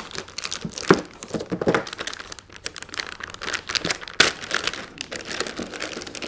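Large metallized anti-static shielding bag crinkling and rustling as it is handled around a boxed device, a dense run of irregular crackles.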